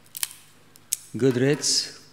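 A few short sharp clicks and rustles of Bible pages being handled at a lectern, then a man's voice starts speaking just after a second in.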